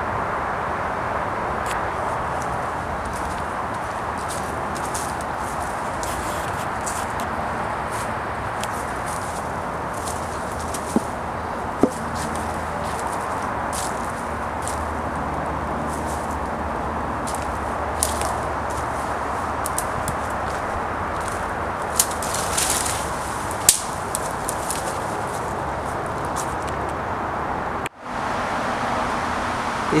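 Steady outdoor background hiss with a few scattered sharp snaps and rustles, as of footsteps through dry twigs and leaf litter in woodland undergrowth.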